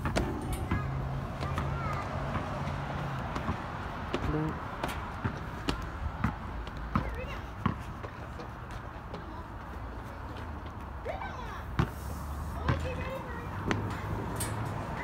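Footsteps on perforated steel playground stairs and deck: irregular knocks and clanks of shoes on the metal.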